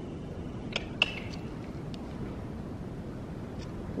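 Steady low rumble of wind buffeting a metal-sided indoor riding arena, with a couple of faint short clicks about a second in.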